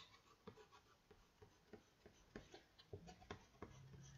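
Near silence with faint, light taps and strokes of a paintbrush on paper, several small ticks spread through the few seconds.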